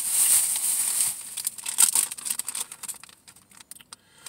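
Thin plastic shopping bag rustling and crinkling as an item is pulled out of it: a dense rustle for about the first second, then a run of sharp crackles that thin out and get quieter near the end.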